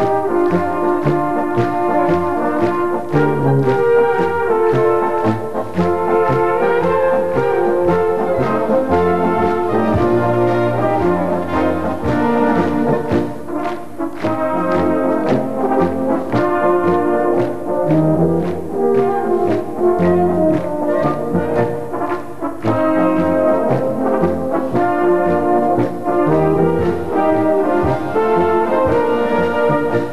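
A large brass band (Blasorchester) playing folk music, with tubas, horns and trumpets carrying the tune and woodwinds joining, over a steady beat.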